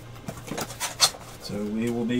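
Trading card packs and cards being handled: a few short, irregular crinkling rustles of the foil wrappers and cards in the first second.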